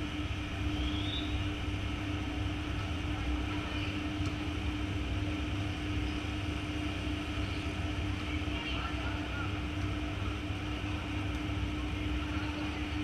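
Outdoor ambience around a volleyball rally: a steady low rumble and a constant hum, with faint distant shouts from the players and a couple of faint knocks.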